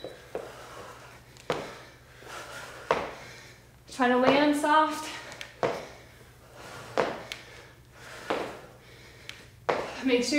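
Repeated jump squats: a short, sharp landing sound about every one and a half seconds as she lands back on the floor.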